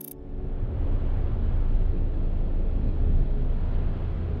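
Twin MTU 12V 2000 diesel engines of a performance motor yacht running with a steady low rumble, mixed with rushing water and wind noise. The sound comes in suddenly about a quarter second in and builds over the first second.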